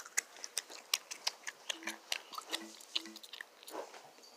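Bubble gum being chewed close to the microphone: a run of quick, irregular wet clicks and smacks, a few each second.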